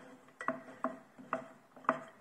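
Light fingertip taps on the Elegoo Saturn resin printer's top around its screen: four sharp taps about half a second apart, each with a brief ringing tone.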